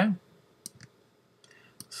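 A few faint, short clicks of a computer mouse, spaced irregularly.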